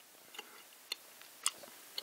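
Faint clicks of fingers handling and pressing together gummy candy building blocks, four short ticks about half a second apart.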